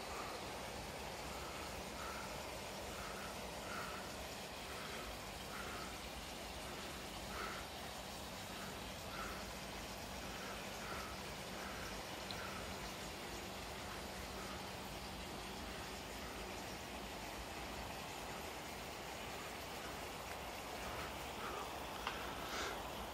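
Steady rush of water spilling from a koi pond's filter outlet into the pond. A faint, short high note repeats about once or twice a second through the first half.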